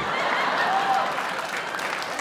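Theatre audience applauding and laughing after a joke, the applause easing off gradually.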